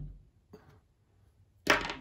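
Hand handling noise on a workbench, mostly quiet: a faint brief rustle about half a second in and a short knock near the end as a hand tool is picked up.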